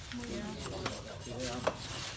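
Hacksaw cutting into an elephant's ivory tusk: a series of short rasping strokes as the blade saws through the ivory.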